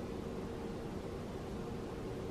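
Steady low hiss of room tone with a faint hum, no distinct sounds.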